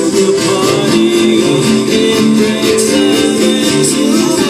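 Live concert music played loud through a festival PA and recorded on a phone: layered, sustained chords that shift every half second or so.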